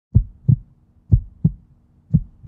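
Heartbeat sound effect: low, deep double thumps, lub-dub, two pairs about a second apart, over a faint steady hum.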